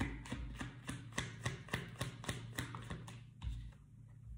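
A tarot deck being shuffled by hand: a quick, even run of soft card slaps about four or five a second, stopping a little after three seconds in.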